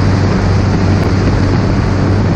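Inpaer Conquest 180 light aircraft in flight: a steady, loud drone of its piston engine and propeller with a low constant hum, mixed with rushing air noise.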